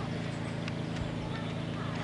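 A horse's hooves thudding on a sand arena as it canters to and over a show jump, a few hoofbeats near the middle, over a steady low hum.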